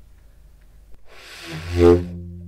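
Conn 12M baritone saxophone: breath noise through the horn starts about a second in, and out of it a low subtone note begins without a tongued attack, swelling to its loudest near the end.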